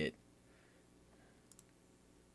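Near-silent room tone with a faint, quick double click about one and a half seconds in.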